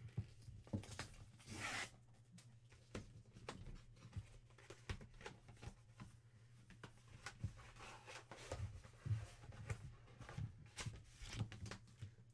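Faint rustling and tearing of a white paper packet being opened by hand, with scattered light taps and handling noises; the loudest rustle comes about one and a half seconds in.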